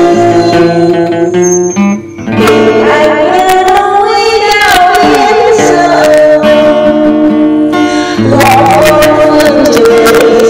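A woman singing a Vietnamese song to acoustic guitar accompaniment, with a brief break about two seconds in.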